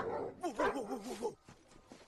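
A Doberman lunges and attacks: a burst of dog noise, then a wavering, quavering cry for about a second. The sound cuts off suddenly just past the middle.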